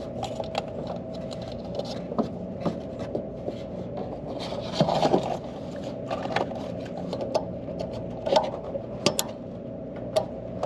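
Hand-handling noises of a plastic wiring-harness connector and corrugated wire loom being worked onto a diesel fuel rail pressure sensor in a cramped spot: scattered clicks, rubbing and scraping, with a longer rustle about halfway and a few sharp clicks near the end. A steady faint hum sits underneath.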